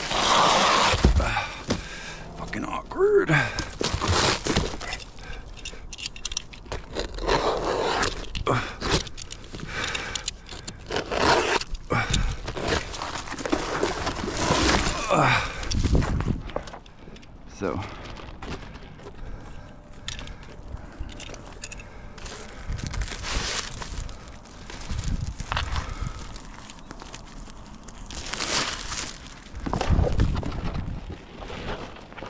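Roll of self-adhered ice-and-water membrane being unrolled, cut and handled on a roof: irregular crinkling, scraping and clattering, loud and uneven throughout.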